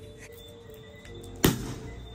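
Background music, and one sharp, loud pop about a second and a half in: a champagne cork being popped.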